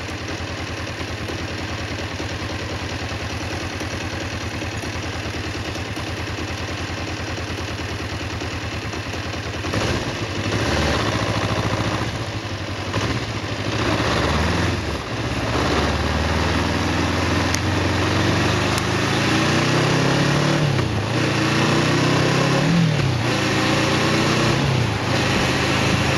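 Kawasaki EN 500 parallel-twin motorcycle engine heard from the rider's seat, running evenly at low revs for about the first ten seconds. It then gets louder and pulls away, the engine pitch rising and falling several times as it revs up and eases off through the gears.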